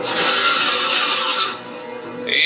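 A dragon's roar from a TV fantasy soundtrack: a loud, rasping screech lasting about a second and a half, then fading, over background music.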